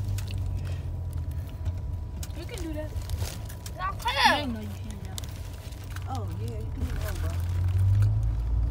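Low, steady rumble of a car heard from inside the cabin, with short children's voice sounds over it, the loudest a brief high call about four seconds in.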